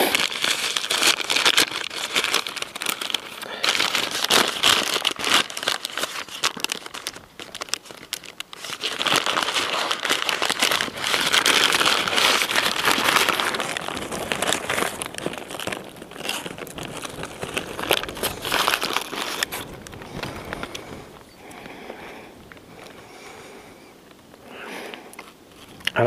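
Paper food wrapper crinkling and rustling as a bread roll is unwrapped and handled. It comes in heavy bursts over the first few seconds and again from about nine seconds in, then softer toward the end.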